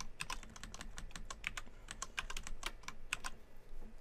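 Computer keyboard typing: a quick, uneven run of key clicks that thins out a little after three seconds in.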